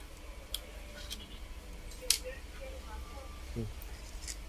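Light metallic clicks of a spinning reel's small parts being handled as the rotor nut is taken off and set down: about four faint clicks, the loudest about two seconds in.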